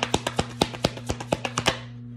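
A deck of tarot cards being shuffled by hand: a rapid run of crisp card clicks, about eight a second, that stops near the end.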